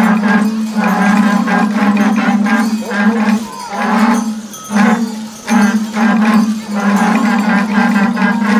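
A group of cow horns blown together in a ragged run of blasts, each a low droning note held for about half a second to a second, with short breaks between them.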